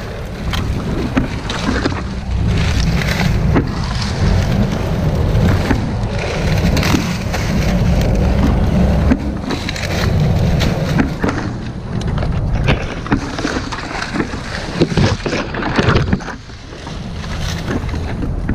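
Dry palm fronds rustling and crackling as they are handled and pushed against close to the camera, over a steady low rumble.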